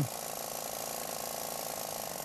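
Stelzer free-piston two-stroke engine prototype running with a steady, fast, buzzing rattle just after starting. Its fuel tap is still shut, so it runs only briefly.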